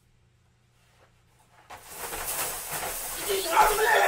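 A man's long, breathy, hissing laugh. It starts about halfway through and grows louder, with his voice breaking into it near the end.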